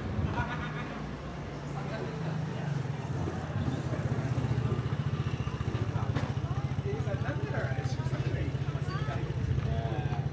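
A motor vehicle's engine idling, a steady low hum with a fast even pulse that grows louder a few seconds in. Snatches of passers-by talking come over it near the end.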